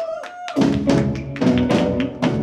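Live indie rock band playing an instrumental passage. Electric guitar notes bend up and down, and about half a second in the drum kit and full band come back in with repeated drum hits under held guitar chords.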